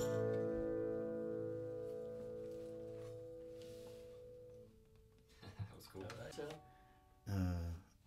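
The last chord of an acoustic guitar and dobro ringing on and slowly fading out, dying away about five seconds in. A few short, quiet spoken sounds follow near the end.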